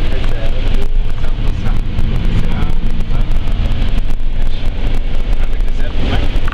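Moving car heard from inside the cabin: a loud, steady low rumble of engine and road noise, with wind buffeting the microphone.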